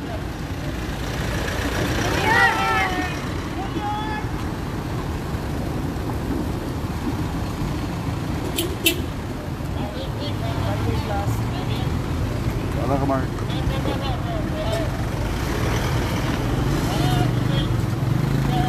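Cars and SUVs driving slowly past at close range, a steady engine and road rumble, with people's voices in the background. Two sharp clicks come close together about halfway through.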